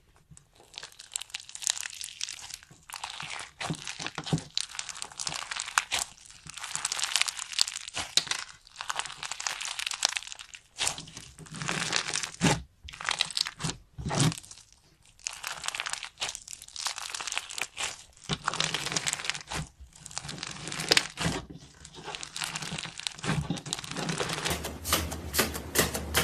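Bead-filled crunchy slime squeezed and kneaded by hand, crackling and popping densely in waves with short pauses between squeezes. Near the end, a quick run of lighter clicks takes over.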